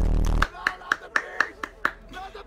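Audio of an edited parody video: a loud deep boom that cuts off about half a second in, then a quick run of sharp clicks, about four a second, each carrying a short pitched blip.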